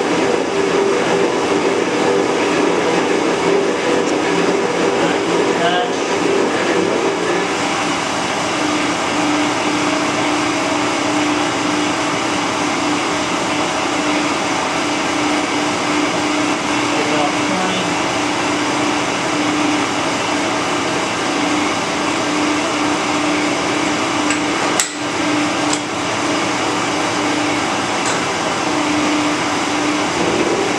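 Metal shaper running and taking a cut across the angle plate's seat with a single-point tool. A steady machine hum whose pitch drops a little about eight seconds in.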